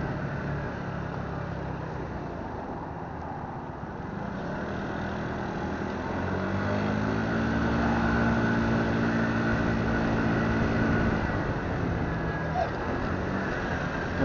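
Motorbike engine running under way with road and wind noise; about six seconds in it revs up and gets louder as the bike accelerates, holds for a few seconds, then eases off near the end.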